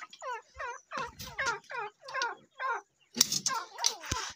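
Grey francolins (teetar) calling: a quick series of short, falling chirps, about four a second. About three seconds in comes a rustle and clatter as the wire-mesh pen is handled.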